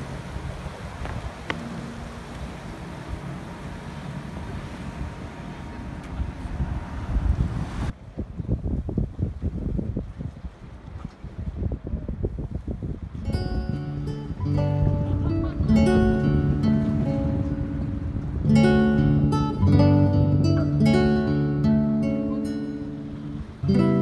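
Small waves washing onto a sandy beach with wind on the microphone. After a cut comes a lower rumble, and from a little past halfway acoustic guitar music, picked and strummed, takes over.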